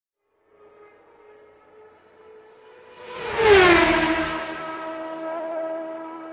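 A race car passing at speed. Its engine note holds high as it approaches, drops in pitch with a loud rush as it goes by about three and a half seconds in, then holds lower and fades as it moves away.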